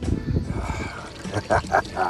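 Water pouring and trickling into a hot spring pool, with a person's voice heard briefly about one and a half seconds in.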